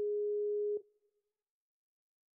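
Skype outgoing-call ringback tone: one steady low beep lasting a little under a second, cutting off about 0.8 s in, while the call rings unanswered.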